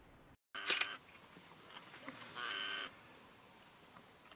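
Two short animal calls, each about half a second long: the first just after half a second in, the second about two and a half seconds in.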